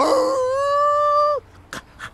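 A performer's voiced dog howl: a rising glide into one long held note lasting about a second and a half, ending abruptly. A faint click follows near the end.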